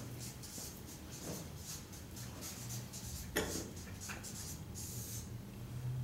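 Felt-tip marker writing on flip-chart paper: a run of short, faint, scratchy strokes, over a low steady room hum.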